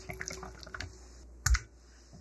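Wire balloon whisk beating thick cream cheese batter in a glass bowl: a rapid run of small wet clicks and squelches. One loud knock about a second and a half in.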